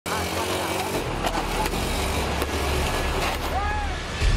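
Motorcycle engines running steadily with a low hum, with a few sharp clicks and voices over them.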